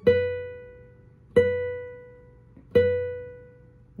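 Nylon-string classical guitar: the note B on the first string at the seventh fret, plucked three times about a second and a half apart, each note left to ring and fade.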